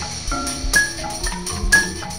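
Background music: a repeating pattern of short high notes over a steady beat of about two low thumps a second.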